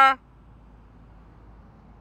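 A man's voice trails off on a held syllable just after the start. Then only faint, steady background noise with nothing distinct in it.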